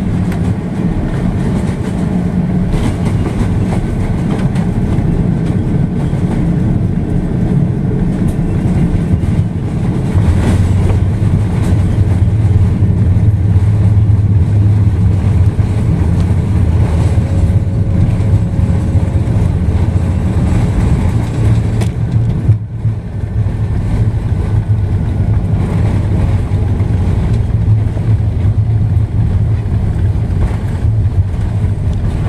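Steady low rumble inside the cabin of an Airbus A330 rolling along the runway after landing: engine noise and tyre rumble, which grows louder about ten seconds in.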